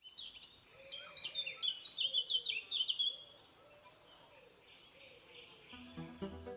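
Birds chirping: a quick run of high, sliding chirps for about three seconds over a faint outdoor hiss, which then fades to the hiss alone. Music with a beat comes back in just before the end.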